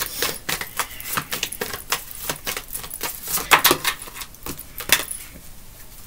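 A deck of divination cards being shuffled by hand: irregular crisp flicks and snaps of the cards, with a few sharper ones about three and a half and five seconds in.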